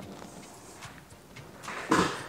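Quiet pause with low, steady background noise and a few faint ticks, then a short rush of noise near the end.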